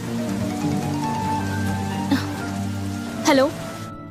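Steady hiss of rain under a film score of sustained, held music tones; a man says "Hello" near the end.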